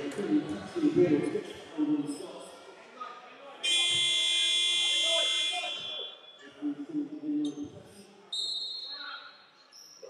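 Sports-hall scoreboard buzzer sounding one steady electronic blast of a little over two seconds, starting about three and a half seconds in. A shorter high tone follows near the end.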